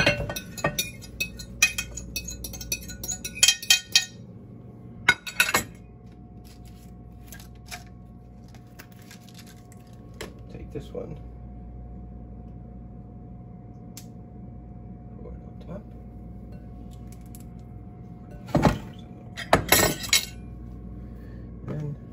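Glass mixing bowl and dishes clinking and knocking as raw food is moved into the bowl by hand, with a quick run of clinks in the first few seconds and a few louder clinks near the end. A faint steady hum runs underneath.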